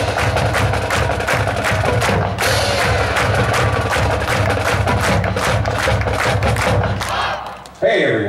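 High school marching band playing loudly, led by a fast, dense drum beat, which stops about seven seconds in.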